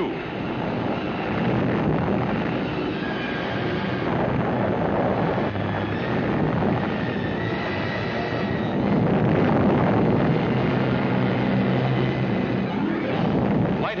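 Long, continuous rumble of an atomic test explosion on a newsreel soundtrack, swelling to its loudest about two-thirds of the way through.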